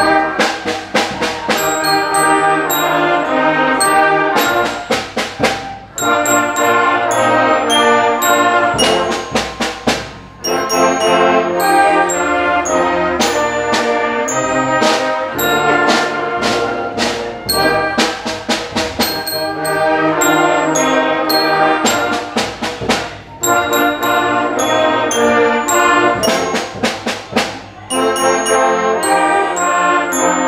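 Youth wind band playing a tune: trumpets, clarinets and saxophone together, with struck glockenspiel notes, the music dipping briefly between phrases.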